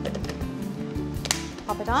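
Background music, with one sharp plastic click just past a second in as a hand blender's motor unit is snapped onto its chopper bowl lid.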